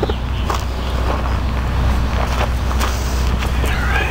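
Clarke 180EN wire-feed welder switched on and running idle: a steady low hum from its transformer and cooling fan, with a few light knocks and rustles over it.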